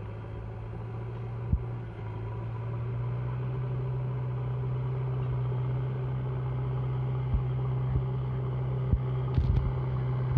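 Diesel engine of a JCB backhoe loader running steadily under load as its front bucket pushes snow along the road. The note rises a little about two seconds in, and a few short knocks come near the end.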